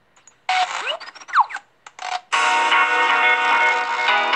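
Recorded music starting up: after a brief silence comes a short noisy intro with sliding whistle-like sweeps and a few sharp cuts, then about two seconds in a full band enters with sustained chords.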